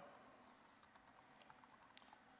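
Near silence broken by a few faint light taps: fingers tapping on an iPad's touchscreen.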